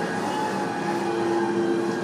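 Steady running noise of a moving passenger train heard from inside the car: an even rumble with a low, level hum, and the toilet's automatic door open onto the carriage.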